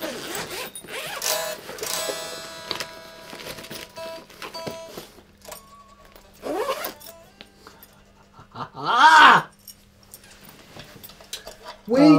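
Zipper of a soft guitar gig bag being pulled open, with scraping and rustling of the bag and a faint ringing string. Later a voice calls out twice without words, briefly and then louder, the second call the loudest sound.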